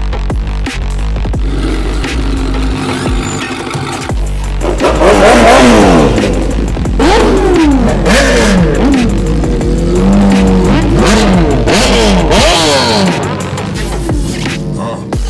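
Sport motorcycle engines revving hard from about five seconds in, pitch climbing and dropping again and again with each throttle blast, loud over bass-heavy electronic music.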